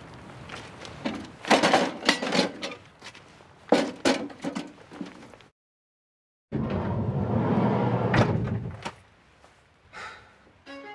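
Sharp clicks and paper rustling of handling at a metal mailbox, then a dead cut to silence for about a second. After that a van's sliding side door runs loudly along its track, with two clunks near the end.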